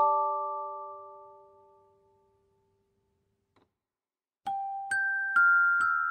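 Background music of bell-like, music-box notes: a chord rings out and fades away, and after a pause of about two seconds a new run of notes begins, stepping down in pitch.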